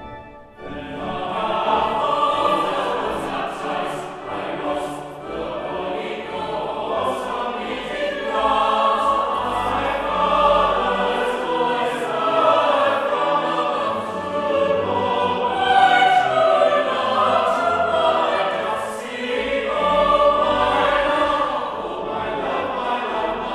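Mixed chapel choir singing a carol in parts, entering together about a second in on the conductor's beat and carrying on in sustained, full-voiced phrases.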